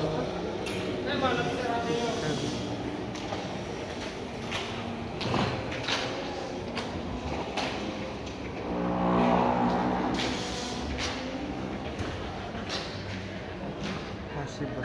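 Echoing ambience of a large, near-empty shopping-mall hall: indistinct voices, louder for a moment about nine seconds in, and scattered clicks of footsteps on the hard tile floor.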